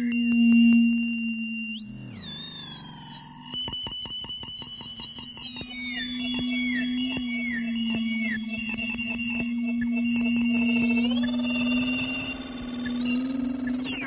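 Electronic music built from audio-feedback (Larsen effect) howls and their modulations: a steady low tone held throughout under high, whistling tones. About two seconds in there is a swooping glide up and down, then a run of short falling chirps in the middle, and the tones rise in pitch near the end.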